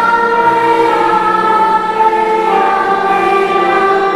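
A congregation with children's voices prominent singing a hymn together, holding long notes.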